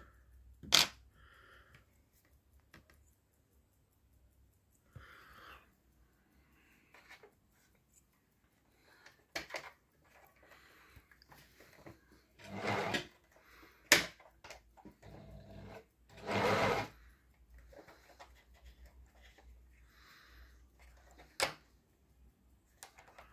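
Scattered handling noises of sewing-machine parts: a few sharp clicks and taps from the metal bobbin case, bobbin and plastic machine parts being set down and fitted, with two short scraping swishes of about a second each partway through.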